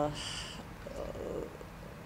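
A pause in a woman's speech: a short breathy hiss as her word ends, then, about a second in, a faint low rasp of breath before she speaks again.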